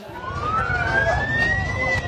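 Ambulance siren in a slow wail: its pitch rises steadily for nearly two seconds, then starts to fall, over the murmur of a large outdoor crowd.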